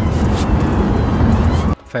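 Loud, even rush of road, wind and engine noise inside a fast-moving vehicle, as picked up by a phone; it cuts off abruptly near the end.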